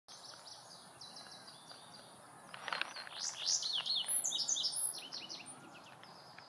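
Indigo bunting song: a loud, rapid run of high, sweeping notes starting about two and a half seconds in and lasting about two seconds, with fainter high chirps before it.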